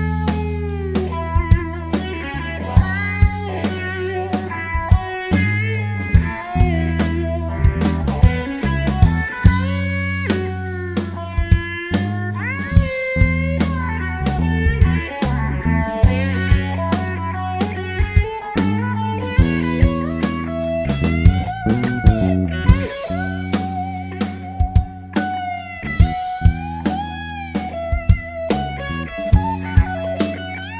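Rock band playing live: an electric guitar solo with bending notes over a bass guitar line and a drum kit.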